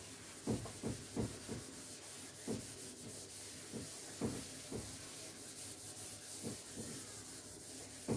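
A whiteboard being wiped clean by hand: a string of irregular rubbing strokes, about one or two a second, over a faint steady hiss.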